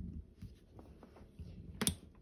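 Screwdriver turning a float bowl screw on a 1984 Honda 200X carburetor: faint scraping and handling noise with a few small clicks, then one sharp metal click near the end.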